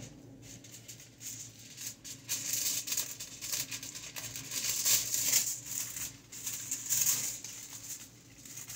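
Aluminium hair foil crinkling and rustling as it is handled, mixed with a comb working through hair: an irregular run of soft scratchy, crackly sounds.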